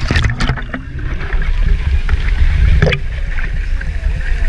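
Pool water sloshing and splashing around a camera held at the waterline, with a steady low rumble of water buffeting the housing. Sharp splashes come at the start and again about three seconds in.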